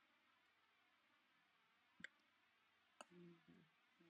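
Two sharp computer mouse clicks about a second apart, over near silence, followed by a brief low hum.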